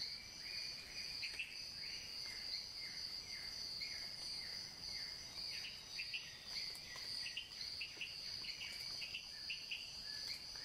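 Tropical forest ambience: a steady high-pitched insect drone, with short falling chirps repeated about every two-thirds of a second beneath it, turning into a quicker run of short chirps after about five seconds.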